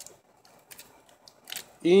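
Quiet handling of Pokémon trading cards on a felt mat: a few faint soft ticks and rustles as a card is picked up, with a man's voice starting near the end.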